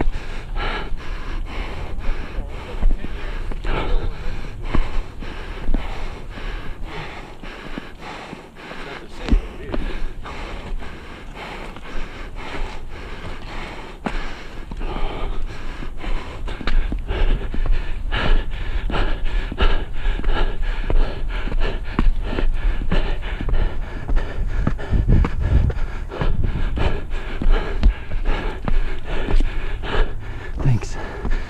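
A hiker panting hard while climbing steep stairs fast, close to the camera microphone, with a regular rhythm of about two breaths or footfalls a second.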